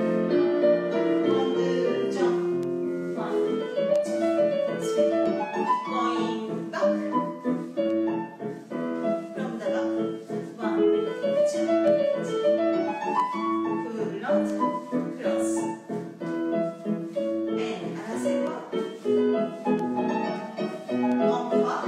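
Piano music accompanying a ballet class exercise, with a steady flow of notes and repeated rising and falling runs.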